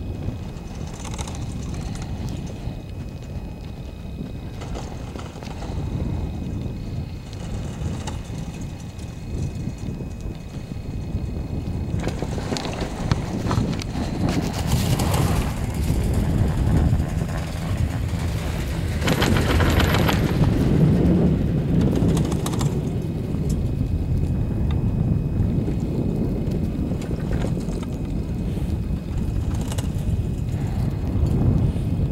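Wind buffeting the microphone with a low rumble during a ride up on a detachable high-speed quad chairlift. It grows louder and rougher for about ten seconds in the middle.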